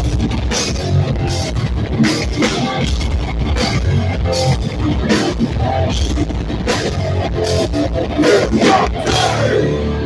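Hardcore punk band playing live, loud through the PA: distorted electric guitars and bass under fast drumming with frequent cymbal crashes, no vocals. Near the end, a pitch glides downward into a held, ringing chord.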